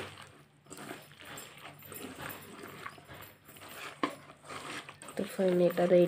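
Faint squelching of hands kneading sliced banana in thick batter in a steel bowl. About five seconds in comes a loud, long, low call that holds steady, then dips and rises sharply at its end.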